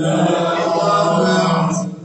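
Male Islamic devotional chanting: one loud held note lasting nearly two seconds, starting suddenly and dropping away near the end.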